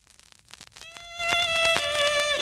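Start of a song: a few soft taps, then a violin entering a little under a second in, holding a high note that grows louder and glides down to the next note.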